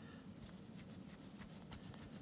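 Faint, quick scratchy strokes of a watch case being polished by hand.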